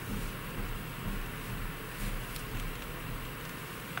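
Hand knitting between counted stitches: a few soft clicks of the knitting needles and yarn rustling over a steady room hiss, with a low rumble through the first half or so.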